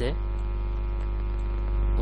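Steady electrical mains hum picked up in the microphone signal: a low, constant buzz with a stack of evenly spaced overtones.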